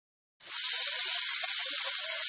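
Marbled beef rib meat (kkot-galbisal) sizzling on a hot griddle pan: a steady hiss with fine crackling, starting suddenly about half a second in.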